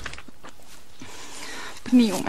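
Faint steady background hiss with a few soft clicks, then near the end a short falling vocal sound from a tearful woman.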